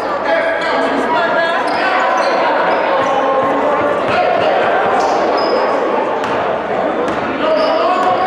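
Basketballs bouncing on a hardwood gym floor in irregular thuds, over overlapping chatter of many voices in a large gym.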